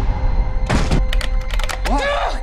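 Low droning trailer score with one heavy thunk about two-thirds of a second in, followed by a quick run of sharp clicks.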